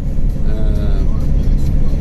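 Steady low rumble of a cargo van's engine and tyres heard from inside the cab while driving at speed. A short voice sound comes about half a second in.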